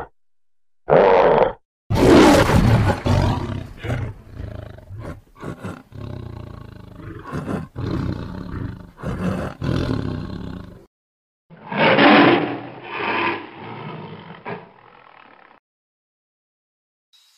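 White tigers snarling and roaring at each other in a fight: a long run of overlapping growls and roars from about two seconds in, a short break, then another burst of roaring. A brief animal call comes about a second in, before the roaring starts.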